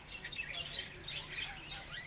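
Birds chirping faintly in the background, a scatter of short high chirps.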